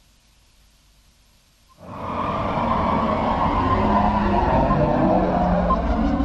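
Near silence, then a little under two seconds in a loud, rumbling sound effect from a sponsor promo's soundtrack comes in suddenly and holds, with short faint beeps about once a second.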